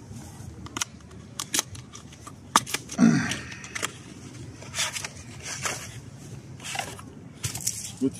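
Small cardboard product box being opened by hand and its inner tray slid out: a run of light clicks, scrapes and rustles, with one louder bump about three seconds in.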